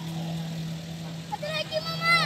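A steady low hum, with people's voices; one voice calls out near the end, its pitch rising and then falling.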